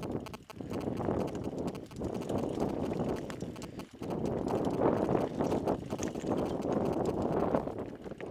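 Mountain bike rolling down a rocky trail: tyres crunching over loose stones and the bike rattling continuously, with brief lulls about half a second in and about four seconds in.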